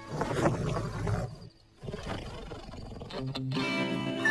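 A cartoon bear's rough roar lasting just over a second, followed by a brief hush; a music cue with held tones comes in near the end.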